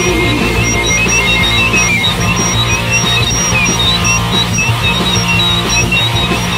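Loud rock music with distorted electric guitar, bass and drums, without singing. Short high-pitched guitar notes squeal and repeat throughout over the dense band sound.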